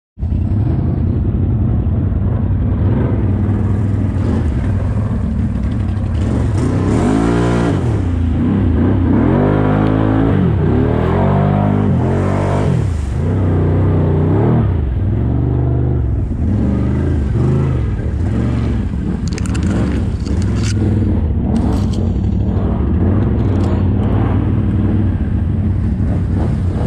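ATV engine running under load through mud and water, revved up and down several times in the first half. A string of sharp knocks comes near the end.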